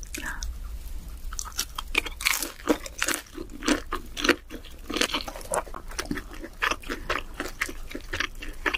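Close-miked ASMR eating sounds: a person biting into and chewing crispy sauced fried chicken, a run of irregular crunches several times a second.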